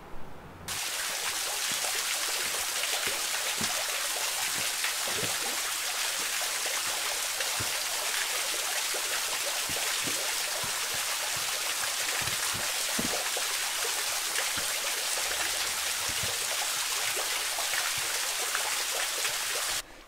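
Small waterfall splashing steadily down a rock face into a stream, an even rush of falling water with scattered individual splashes and drips. It starts abruptly about a second in and cuts off just before the end.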